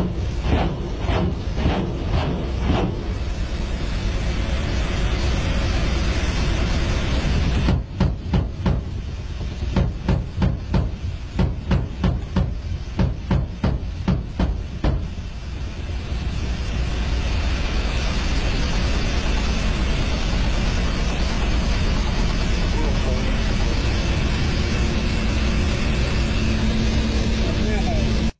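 Cockpit noise of a Kamov Ka-52 coaxial-rotor attack helicopter in flight: a loud, steady drone of engines and rotors. About a third of the way in comes a run of a dozen or so sharp, evenly spaced pulses, roughly two a second, lasting several seconds.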